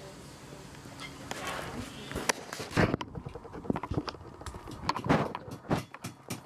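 Blacksmith hammers striking on anvils in a forge: irregular sharp knocks, several in the second half.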